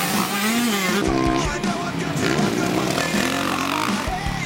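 Motocross bike engines revving up and down over a backing music track.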